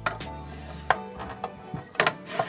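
Several light knocks as a large glass storage canister with a wooden lid is handled and set on a pantry shelf, the sharpest about a second in, over quiet background music.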